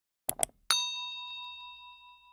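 Animated subscribe-button sound effects: two quick clicks as the bell icon is clicked, then a bright notification-bell ding that rings on and fades away over about two seconds.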